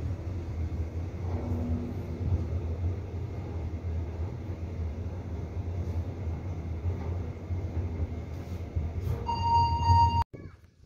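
Toshiba passenger elevator car descending, heard from inside the car as a steady low hum and rumble of travel. Near the end a single electronic beep of about a second sounds as the car reaches the ground floor.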